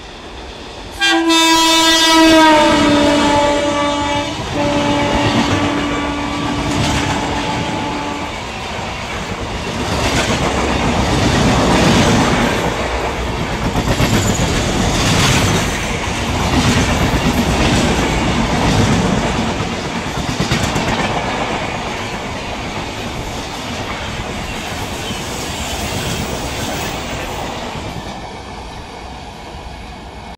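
WAP-7 electric locomotive's horn sounding one long blast from about a second in, dropping slightly in pitch and breaking briefly before it stops at about eight seconds. Then an express train's coaches run past at speed, wheels clattering over the rail joints, fading near the end.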